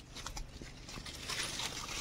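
Leaves and twigs rustling and crackling as a hand and body push through dense vine-covered brush, growing louder in the second half.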